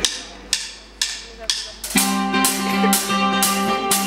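A live rock band starting a song. Sharp percussion hits come about twice a second, and about two seconds in the band joins with steady chords and the sound grows fuller, recorded from the audience in a hall.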